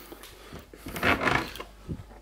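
Refrigerator door being pulled open: a short rush of noise about a second in, then a light click near the end.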